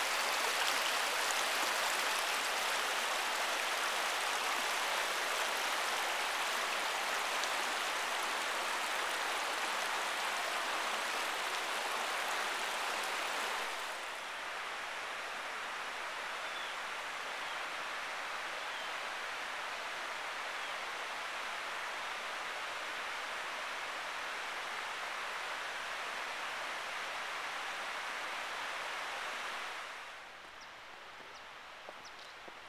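Shallow creek water rushing steadily over a flat rock shoal. The sound drops a little quieter about halfway through.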